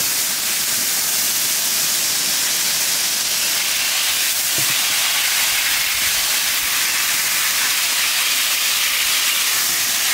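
Fine water spray hissing steadily as it falls on leafy garden plants and soil while they are watered.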